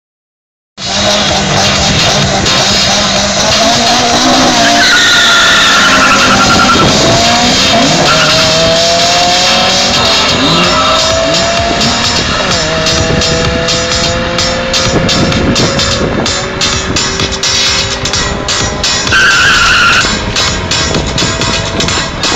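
Two Honda Civics, a stock EP3 Type R and a tuned coupe, launching and accelerating hard down a drag strip. Their four-cylinder engines rev high, the pitch climbing and dropping back at each gearshift. There is a tyre squeal around the launch, and the engines grow somewhat fainter as the cars run away.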